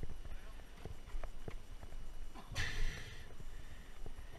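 Scattered light knocks and taps as a spear shaft and gear are handled against an inflatable boat, with a short rush of noise about two and a half seconds in.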